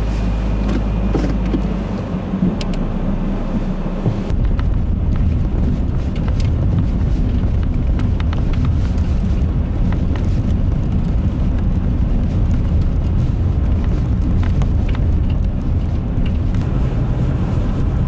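Steady engine and road noise of a car driving through a road tunnel, heard from inside the cabin.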